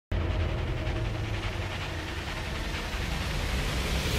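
Porsche 911 GT3 Cup race cars' flat-six engines running hard at speed on track, a steady, dense engine sound strongest in the low end.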